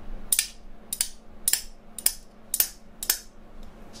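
Two metal spoons held back to back, clacking as they are struck against the knee: six sharp, evenly spaced clicks, about two a second.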